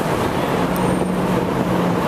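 Street traffic noise: a steady low engine hum over an even wash of city road noise.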